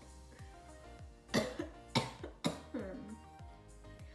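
A woman coughing three sharp times, mixed with laughter, as she reacts to a very pungent smell, over soft background music.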